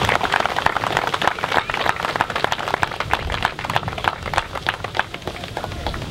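A crowd applauding, many hands clapping steadily, dying down slightly near the end.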